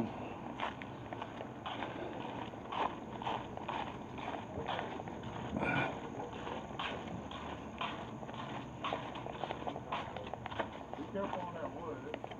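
Footsteps of someone walking at a steady pace, about two steps a second.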